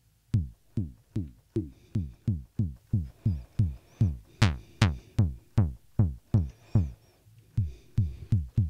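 Behringer Pro-1 analog synthesizer patched as a kick drum, playing a steady run of short kicks a little over twice a second, each a quick downward pitch sweep. Its filter and resonance are being turned as it plays, and a few hits about halfway through come with a brighter click.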